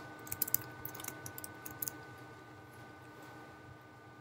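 A few faint computer keyboard keystrokes, scattered clicks in about the first two seconds, then only a faint steady hum.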